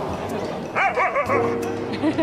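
A small dog giving a quick run of high-pitched yips about a second in, over steady background music.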